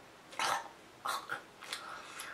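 A woman's short throat noises: one louder burst about half a second in, then three softer ones in the second half.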